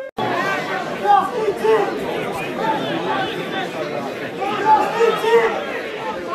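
Overlapping chatter of many voices, people talking and calling over one another with no single voice clear. The sound drops out for an instant right at the start.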